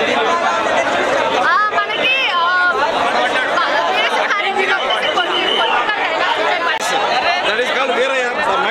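A woman talking into an interview microphone over the steady chatter of a crowd around her.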